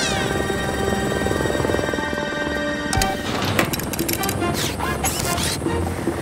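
Cartoon background music with held chords and a falling swoop at the start. About halfway through comes a thump, then a run of quick mechanical sound effects with sliding pitches as a robotic grabbing arm extends and changes tool.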